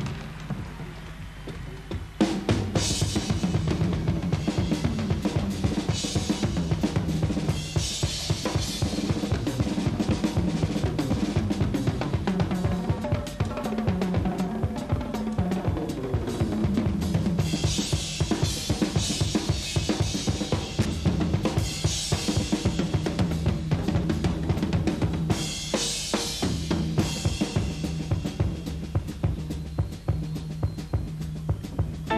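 Live rock drum kit solo: rapid strokes on snare, toms and bass drum with cymbal crashes every few seconds, picking up and getting louder about two seconds in.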